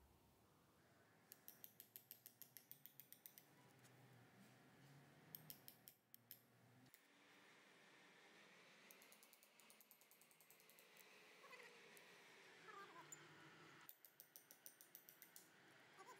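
Faint, quick runs of light hammer taps on a steel chisel, about eight a second, as the chisel cuts through the old copper winding of an electric motor stator; the runs come four times, with short pauses between.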